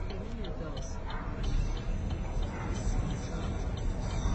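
Steady low rumble of a vehicle moving, heard from inside the cabin, with light, fairly regular ticking.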